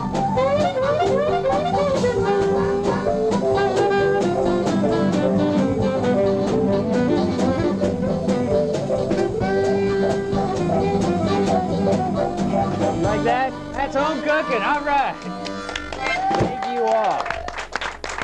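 A small live band of harmonica, saxophone, piano, electric guitars, bass and drums playing a tune that ends about two-thirds of the way through, followed by men's voices talking.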